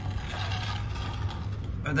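Steel brick trowel scraping fresh mortar off the face of newly laid bricks, a rough, uneven scraping, over a steady low hum.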